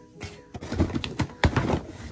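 A knife slitting the packing tape along the seam of a cardboard shipping box: a handful of short, sharp scraping and tearing strokes, with cardboard rustling as the flaps are worked open.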